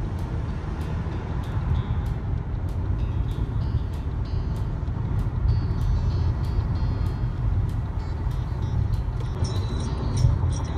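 Steady low road and engine rumble heard inside a car cruising on a freeway.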